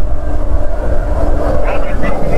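Wind rumbling on the microphone of a moving motorcycle, with steady engine and road noise underneath.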